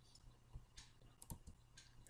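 Near silence with a few faint, separate clicks from a computer's keyboard and mouse as the debugger is operated.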